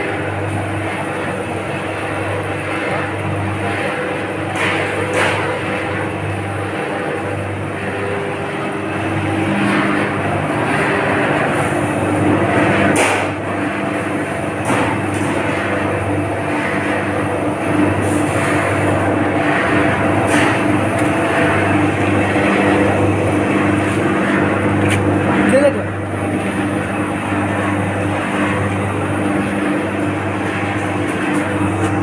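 A motor-driven rotating-drum fryums roaster machine running with a steady mechanical hum that pulses about once a second. A few brief knocks are heard over it.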